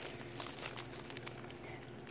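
Faint rustling and crinkling of dry leaves and twigs close to the microphone.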